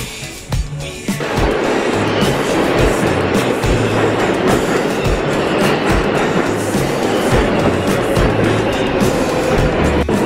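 New York City 7 subway train pulling into the station: a loud, steady rushing rumble that sets in about a second in. Background music with a steady beat plays underneath.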